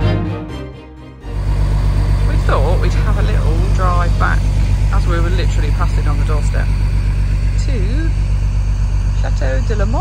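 Background music fading out, then a large truck's diesel engine running steadily with a low, evenly pulsing rumble, heard from inside the cab, with faint voices over it.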